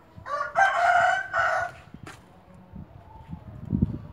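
A rooster crowing once: a single loud call lasting about a second and a half, with a short break partway through. A few low thumps follow near the end.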